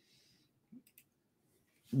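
A few faint computer-mouse clicks over near silence, then a man starts speaking right at the end.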